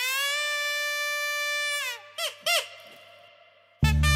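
A cartoon-style comic sound effect: a squeaky, reedy tone held for about two seconds that droops in pitch at the end. Two quick falling chirps follow, and music starts just before the end.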